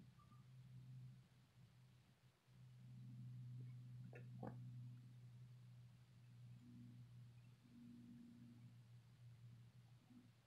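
Near silence: a faint steady low hum, with two faint ticks about four seconds in.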